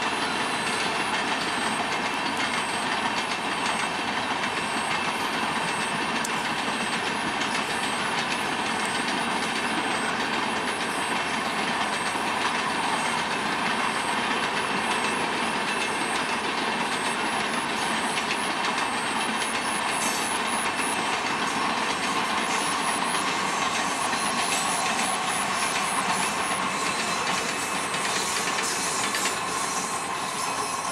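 Passenger coaches of a long train rolling past, with a steady clatter of wheels on the rails that holds an even level throughout.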